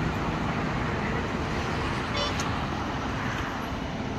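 Steady road traffic noise with a vehicle engine running.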